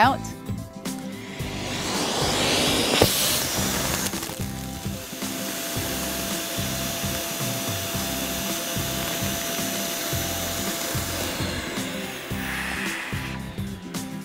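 Vacuum cleaner running, its hose sucking the air out of a vacuum storage bag through the bag's valve. The rushing noise builds about a second in, a steady whine joins it midway, and it dies away near the end.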